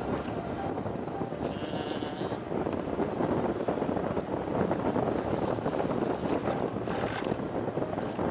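Wind rushing over the microphone and road noise while riding an electric scooter, growing louder about three seconds in.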